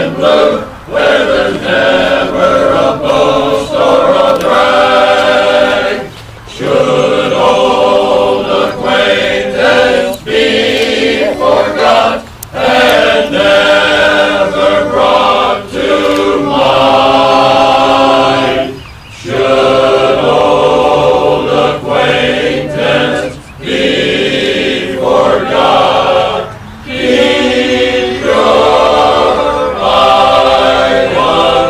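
A men's choir singing together in harmony, in long phrases with short pauses between them.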